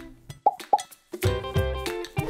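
Outro logo jingle: two short pops about a third of a second apart, then, after a brief gap, a music sting starting a little over a second in.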